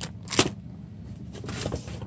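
Handling noise from items being moved around in a box: one short knock or click about half a second in, then faint rustling.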